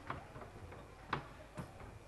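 Quiet, irregular sharp taps and knocks, a few a second, with the loudest one just past the middle.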